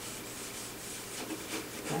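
Soft scuffing of a cloth rubbed back and forth over the varnished wooden frame of a harp, working Old English dark-wood polish into abraded spots in the finish.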